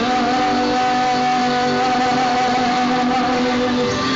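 A male singer holds one long note into a microphone for nearly four seconds over strummed acoustic guitar, heard through the stage PA.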